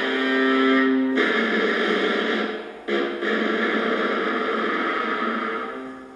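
Solo viola played with the bow: a held note gives way about a second in to a rougher, noisier bowed sound. The sound breaks off briefly near the middle, then carries on and fades toward the end.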